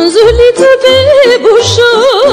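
Female folk singer singing a Romanian folk song in the Gorj style over a band with a steady beat: her voice comes in at the start with a rising slide into a long held high note, ornamented with quick wavering turns.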